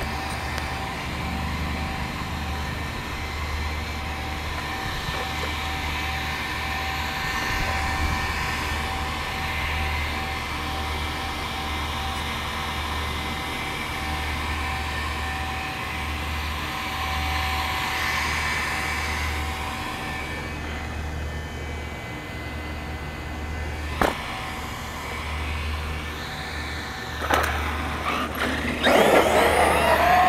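Steady outdoor background noise with wind buffeting the microphone. Near the end, the electric motor of an X-Maxx 8S RC monster truck spins up with a rising whine as the truck pulls away.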